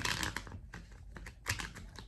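A deck of tarot cards being shuffled by hand. A dense run of quick card flicks comes in the first half second, then lighter scattered taps, with a sharper tap about one and a half seconds in.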